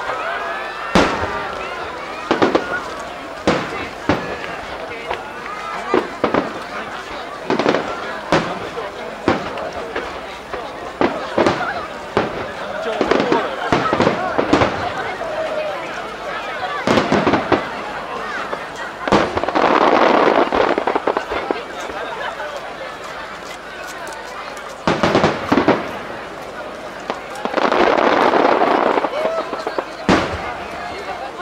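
Aerial firework shells bursting overhead, many sharp reports a second or two apart, with two longer stretches of dense hissing noise about two-thirds of the way through and near the end.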